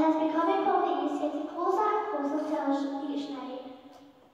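A woman speaking, one voice in a pitch range typical of a woman or child; it trails off near the end.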